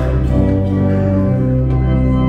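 Church organ playing a hymn in sustained chords, with the harmony shifting early on and settling into new held chords near the end.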